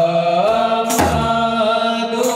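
Men's voices chanting a devotional chant, holding long notes that bend slowly in pitch, with a single large-drum stroke about a second in.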